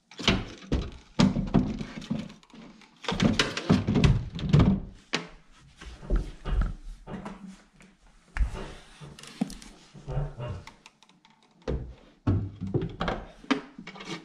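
Repeated thunks, knocks and clicks of lithium trolling-motor batteries being settled and strapped down in a boat's battery compartment, with some rustling of handling in between.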